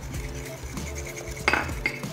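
Wire whisk beating egg yolks, sugar and cornstarch in a glass bowl: the wires scrape and clink against the glass, with a sharper clink about one and a half seconds in and another just before the end.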